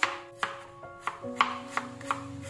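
Kitchen knife slicing carrots on a chopping board: five sharp chops, a little under half a second apart.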